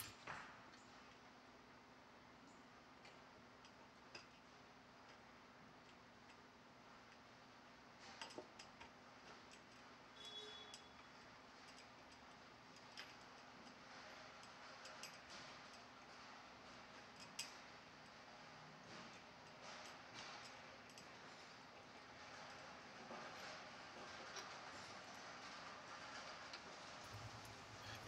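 Near silence: a low steady hum of room tone, with faint, scattered clicks and light metallic ticks from hands working the light fixture's metal mounting arm and bolt at the top of the pole.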